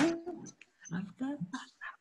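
A man's voice in short, soft vocal phrases, loudest at the very start, as he eases back into singing a song.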